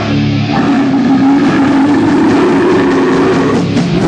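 A rock band playing live and loud, with distorted electric guitar; a held chord gives way to a denser, driving passage about half a second in.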